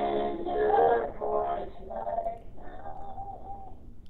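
A man and two women singing together in family harmony, held sung notes over a video-call link that sounds thin and breaks up a little. A last held note wavers and fades out near the end.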